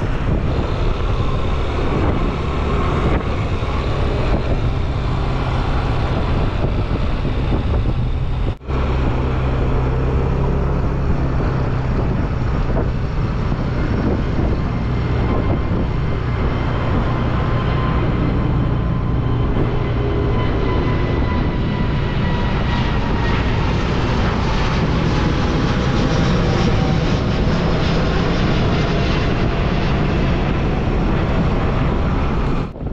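Steady wind and road noise from a moving motorbike. In the second half a jet airliner passes overhead, its engine whine slowly falling in pitch. The sound cuts out for an instant about eight and a half seconds in.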